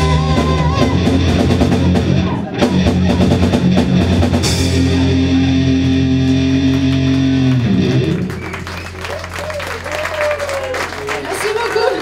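Symphonic heavy metal band playing live with distorted electric guitar, bass, drum kit and keyboards, at full volume with held low chords. About eight seconds in the full band drops away and the sound thins to a lingering low note with sliding high tones over it, as the song winds down.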